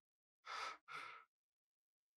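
Two short, soft puffs of breath from a person, one right after the other, starting about half a second in.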